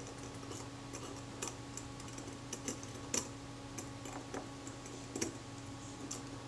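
Scattered small metallic clicks of steel tweezers and a tiny retard gear train being nudged against the metal parts of a camera leaf shutter, the loudest about three seconds in, over a faint steady hum.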